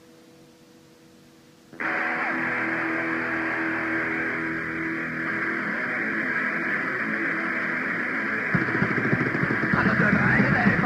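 Lo-fi 1984 cassette rehearsal recording of a punk band: a short gap of tape hiss, then about two seconds in a loud, distorted band sound with held chords comes in suddenly. Near the end, drums come in with fast, hard hits as the song gets going.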